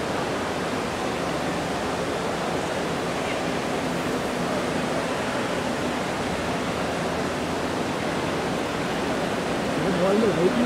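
Steady, even background noise of a busy airport terminal: a wash of crowd hubbub and hall noise with faint voices mixed in.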